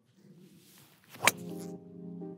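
Three wood striking a golf ball off the fairway: one sharp crack about a second and a quarter in. Background guitar music with held notes follows.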